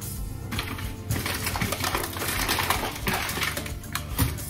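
Wooden spoon stirring and scraping butter and sugar in a glass mixing bowl, a rapid irregular clatter as the mixture is creamed by hand, over background music.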